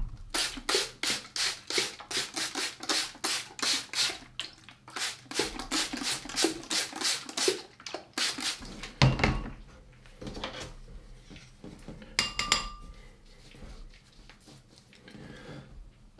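Handheld trigger spray bottle misting water onto a watercolour painting to lift paint out, about three quick spritzes a second for some eight seconds. A thump and then a brief clink follow.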